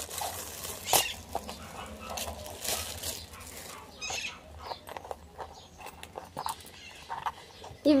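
Clear plastic packaging crinkling and rustling in short, scattered bursts as a small handbag is pulled out of it and handled.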